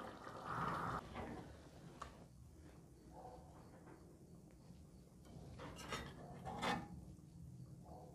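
Faint clinks and scrapes of a metal spoon against a cooking pot and a ceramic plate as stewed chicken gizzards are served, with two louder knocks about three quarters of the way through.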